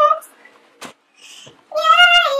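A girl's high singing voice on long held notes: one note ends just after the start, a sharp click comes a little before the middle of a short pause, and a new high note begins near the end.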